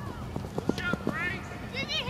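Distant high-pitched shouts and calls from soccer players on a grass pitch, rising about a second in and again near the end, over scattered short knocks.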